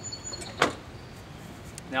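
A single sharp plastic knock about half a second in, as the side discharge chute on a John Deere D105 riding mower's deck is handled.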